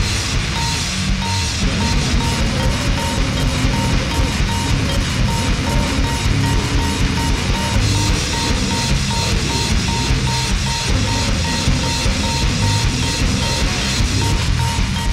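Sludgy goregrind metal: dense, distorted heavy music with a strong low end and a steady drum beat. A high tone keeps cutting out and coming back through it.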